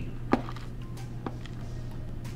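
Pringles crisps crackling: a few short, sharp clicks, the loudest about a third of a second in, over a steady low hum.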